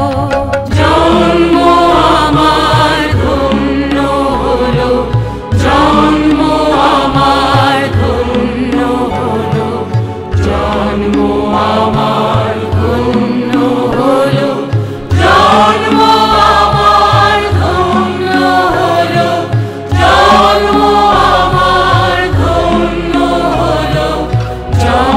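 Music: a Bengali song, voices singing over instrumental backing in phrases of about five seconds.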